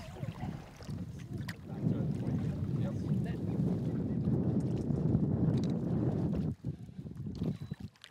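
Wind buffeting the microphone over choppy lake water slapping around a fishing boat, a steady rough rumble with a few small clicks. It dips away briefly about six and a half seconds in.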